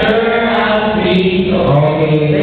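A group of young voices singing a cappella together, holding out the words "with me" in long sustained notes.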